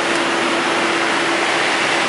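Steady rushing noise inside an idling tractor-trailer's cab, with a steady hum running underneath.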